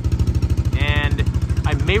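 Honda ATC200E Big Red three-wheeler's single-cylinder four-stroke engine idling steadily with an even, rapid beat. The carburetor has just been rebuilt with a clean low-speed jet, so it now holds a smooth idle.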